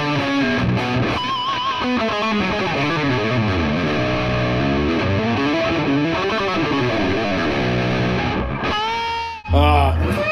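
Distorted seven-string electric guitar playing fast hybrid-picked runs up and down the scale, with a wavering vibrato note about a second in; the player himself calls his hybrid picking all over the place. Near the end the playing breaks off into a short vocal sound and a loud low thud.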